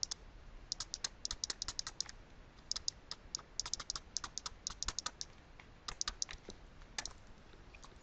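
A stylus tapping and clicking on a pen tablet during handwriting, in quick faint bursts of clicks.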